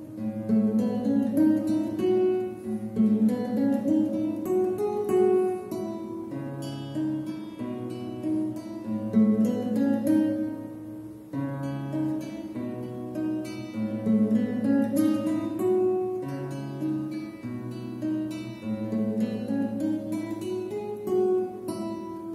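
Solo classical guitar played fingerstyle: repeated rising arpeggios of plucked nylon strings over held bass notes, in a steady, even rhythm with a brief pause about 11 seconds in before the pattern resumes.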